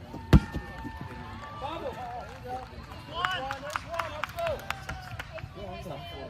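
A rubber kickball kicked hard: one sharp thump about a third of a second in, the loudest sound here. Players and spectators shout and call out over the rest of the play.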